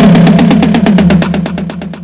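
Gqom instrumental beat carrying on without vocals: a sustained, buzzing synth bass under a rapid, even run of short percussion hits, fading out over the last second.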